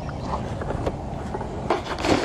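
Wind rumbling steadily on the microphone, with a few faint clicks and a brief rustle near the end from the fishing rig being handled.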